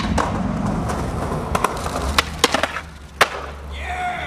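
Skateboard wheels rolling on concrete with a steady low rumble, broken by several sharp clacks of the board between about one and a half and three seconds in, the last one the loudest.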